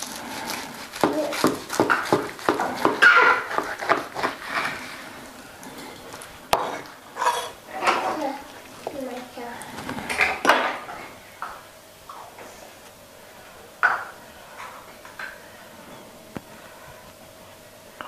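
Large kitchen knife slicing through a roast of beef on a wooden cutting board: irregular scrapes and taps of the blade on the board. They are busiest in the first half, then thin out to a few sharp knocks.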